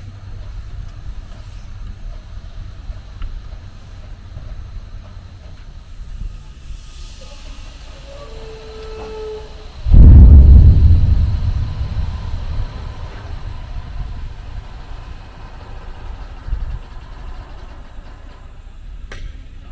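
Truck engine running steadily with a low rumble while a raised tipper trailer empties its load of sand. About ten seconds in, the load slides out of the tipper body in a sudden loud rush that dies away over a few seconds.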